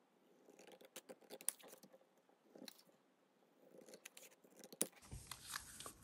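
Scissors cutting through a strip of printed paper: faint, irregular snips in small clusters with short pauses between them.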